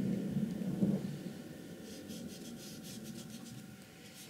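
A thin paintbrush stroking paint onto paper: a soft rubbing of the bristles, louder in the first second, then a run of short, light strokes.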